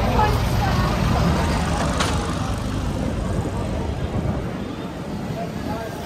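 Low engine rumble of a red London bus running close alongside, fading about four seconds in, under the chatter of a crowd on the pavement. A single sharp click about two seconds in.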